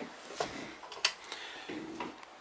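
Quiet room sound with a few scattered sharp ticks and clicks, the loudest about a second in.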